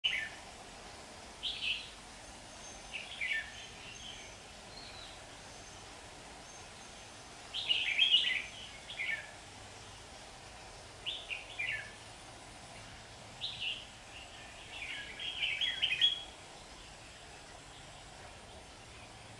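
Red-whiskered bulbuls singing: short bursts of quick, chirpy song phrases every couple of seconds, loudest about eight seconds in and again near the end.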